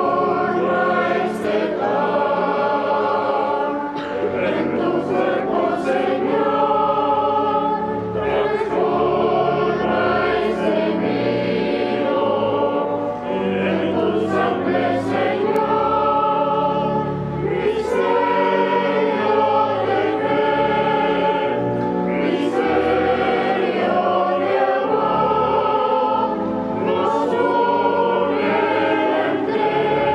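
A boys' and men's choir sings a hymn in sustained, flowing phrases, with pipe organ accompaniment beneath. It is the offertory music of a Catholic Mass.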